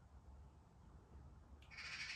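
Near silence over a faint low hum; near the end, a short slurp as a man sips ale from a glass.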